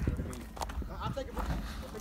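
Faint voices of people talking, with scattered light knocks from handling the phone and a steady low rumble underneath.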